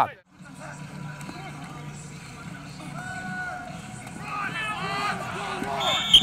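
Faint, overlapping voices of football players and coaches calling out across an outdoor practice field, over a low steady hum. The voices grow louder and busier toward the end.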